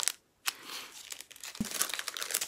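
Small printed advent-calendar gift bag crinkling as it is handled and opened, with a couple of light clicks. It begins after a short dropout of silence.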